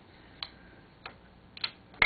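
Quiet room tone with a few faint, sharp clicks: one about half a second in, one about a second in, and two close together near the end.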